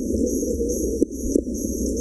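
Firework shells bursting, with sharp bangs about a second in and again shortly after, over steady loud festival background music. The whole sound is heavily filtered, its middle range cut away, so it sounds thin and hollow.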